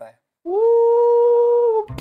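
A man humming one long held note that slides up briefly at the start, then stays level for over a second before stopping.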